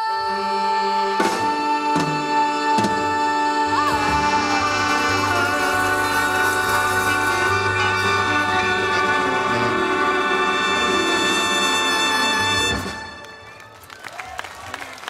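A live big band with a brass and saxophone section and a female singer ending a song. A few accented hits lead into a long, loud, sustained final chord with the singer holding a long note above it, all cut off together near the end.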